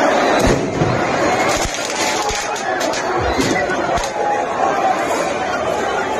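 A large crowd shouting and chattering, with a string of about six sharp bangs in the first four seconds.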